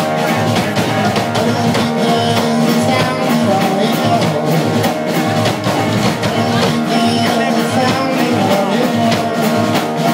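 Live indie rock band playing, with guitars over a steady drum-kit beat, recorded from the audience in a small club.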